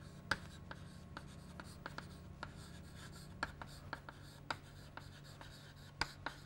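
Chalk on a chalkboard while words are written: a string of short, irregular taps and scratches, one of the sharpest about a third of a second in and a cluster around the middle, over a faint steady low hum.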